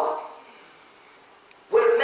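A man preaching in a loud, shouted voice into a handheld microphone. One shouted phrase ends at the start, there is a pause of about a second and a half, then another loud phrase begins near the end.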